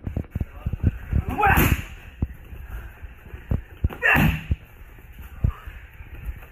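Power low kicks smacking into a handheld Muay Thai leg-kick pad, twice, about a second and a half in and again about four seconds in, each a sharp slap with a shouted effort. Short low thuds of bare feet and pad between the strikes.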